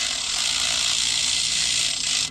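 Cordless power ratchet whirring steadily as it spins a nut down onto the top stud of a new front sway bar link. The nut is being run on but not fully tightened.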